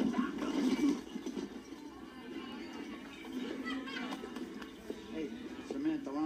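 Television sound of a bar scene: background music with indistinct voices, played through a TV speaker and picked up in the room. The voices are louder in the first second.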